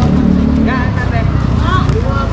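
A steady low motor hum with brief shouted calls from basketball players about a second in and again near the end.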